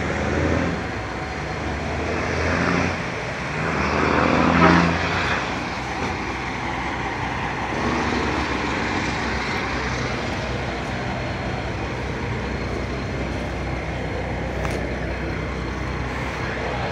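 Heavy truck diesel engine running steadily, swelling louder for a moment about four to five seconds in.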